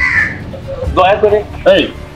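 A short bird call right at the start, followed by two brief bits of speech.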